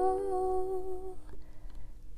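A woman humming one held, slightly wavering note over ringing soprano ukulele notes. The hum stops a little over a second in, leaving the ukulele to die away quietly.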